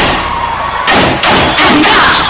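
Loud stage dance music built on heavy drum hits: one at the start, another just under a second in, and the full music coming back about a second and a half in.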